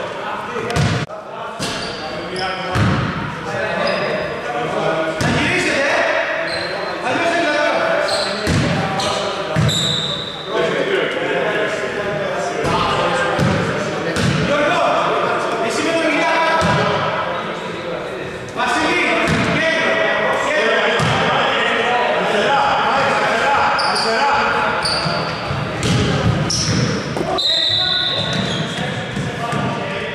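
A basketball bouncing on a wooden gym floor, with sharp repeated thuds that echo in a large hall, over men's voices calling on court.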